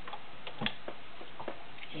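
A few irregular light clicks and taps, the sharpest about two-thirds of a second in, from hands handling the fabric and parts of an all-metal Kenmore 1318 sewing machine.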